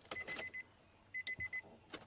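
A car's electronic warning chime beeping rapidly at one high pitch, in two bursts of about half a second each, one at the start and one a little past the middle, with a few light clicks of handling between them.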